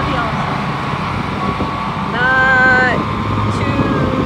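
Ferris zero-turn mower's engine running steadily as the mower cuts across a steep grass slope. A brief drawn-out voice sound is heard about two seconds in.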